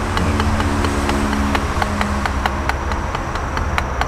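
Wooden drumsticks striking a Gransen rubber drum practice pad in steady single strokes, about four a second, over a steady low hum.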